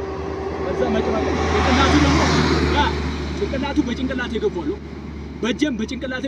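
A motor vehicle passing on the road, its engine and tyre noise swelling to a peak about two seconds in and then fading.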